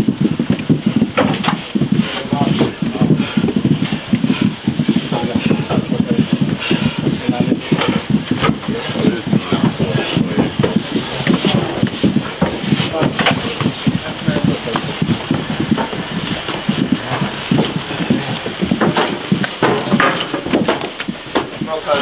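Many voices talking over one another, with scattered sharp clacks and knocks throughout.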